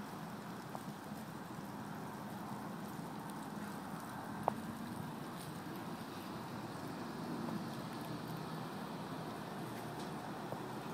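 Steady low background noise with one sharp click about halfway through.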